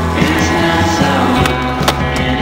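Rock music with guitar playing over the footage, with a single sharp crack near the end.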